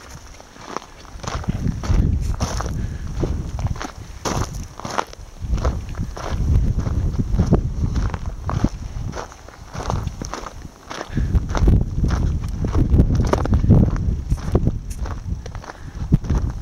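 Footsteps crunching on a gravel trail, a step or two each second, with gusts of wind rumbling over the microphone.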